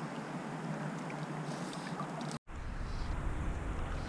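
Steady rush of river current flowing past a wading angler. About two and a half seconds in, the sound drops out for an instant at an edit cut, then the same water noise returns with a low rumble under it.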